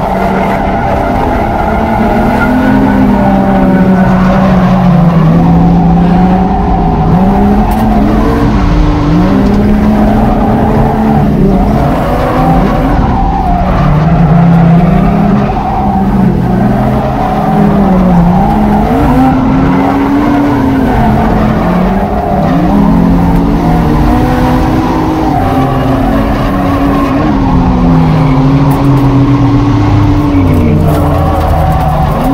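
Drift car's inline-six engine on the throttle, its pitch rising and falling again and again as the revs swing through the slides, over the hiss and squeal of tires sliding on the asphalt.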